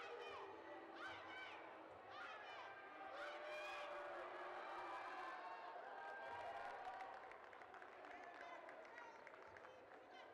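Basketball arena crowd noise: many voices talking and shouting at once, overlapping, with no single clear talker.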